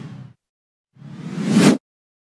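Whoosh sound effects for an animated logo intro. One whoosh fades out in the first third of a second, then a second one swells up from about a second in and cuts off suddenly.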